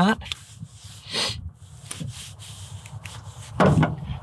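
Small knife cutting through a pheasant's skin and thigh meat around the dislocated hip joint: faint rubbing and slicing sounds with small clicks, and one brief swish about a second in.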